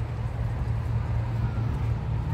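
A steady low rumble of outdoor background noise, with no distinct events.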